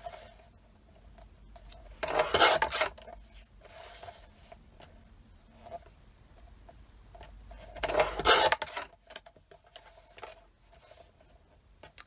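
Guillotine paper trimmer cutting printed paper twice, about two seconds in and again about eight seconds in, each cut a short scraping slice. Between the cuts, faint rustling and sliding as the paper is turned and lined up on the trimmer's plastic base.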